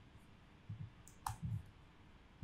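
Faint computer mouse clicks: a few soft clicks, with one sharper click a little past halfway.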